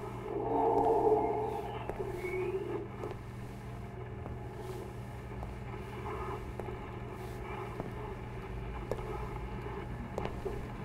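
Low, steady droning hum of a horror-film soundtrack's ambience. A louder pitched swell comes about a second in, then fainter tonal sounds and faint clicks.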